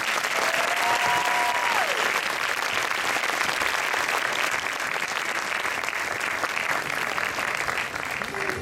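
Audience applauding steadily, a dense clatter of many hands clapping, with one short held call over it near the start that drops away about two seconds in.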